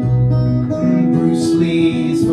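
A man singing to his own acoustic guitar, strummed steadily.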